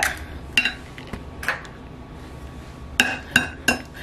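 An egg tapped against the rim of a glass pie dish to crack it: sharp clicks that set the glass ringing briefly, about three in the first second and a half, then three in quick succession near the end.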